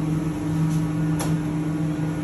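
Steady electric fan hum of commercial kitchen equipment, with a single sharp click about halfway through as the convection oven door is opened.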